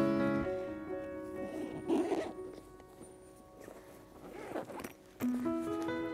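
Zipper of a soft tripod bag being pulled, two pulls a couple of seconds apart. Background music fades out at the start and comes back near the end.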